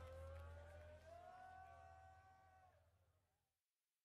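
Faint live-concert hall sound fading out: a low rumble with a wavering pitched tone above it, dying away to silence about three and a half seconds in.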